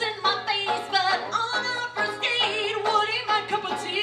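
A woman singing a wordless, yodel-like vocal line that leaps up and down in pitch, over picked banjo.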